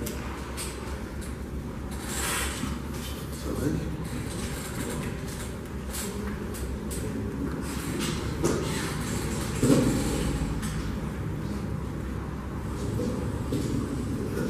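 Plastic draw balls being handled in a glass bowl and twisted open: a few short clicks and rustles over a steady low room hum.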